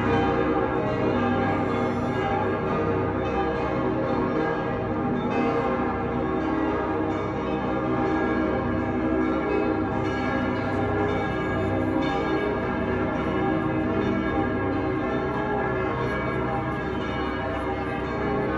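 Church bells pealing continuously, a dense wash of overlapping ringing tones at a steady level with no pause.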